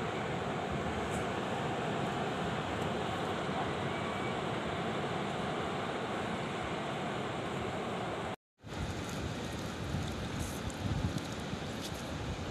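Steady wash of small waves on a sandy beach mixed with wind on the microphone. It cuts out briefly about eight and a half seconds in, then comes back rougher, with irregular low bumps of wind.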